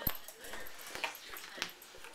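Seven-week-old Afghan hound puppies giving faint vocal sounds as they play, with a sharp knock at the start and a couple of lighter knocks later.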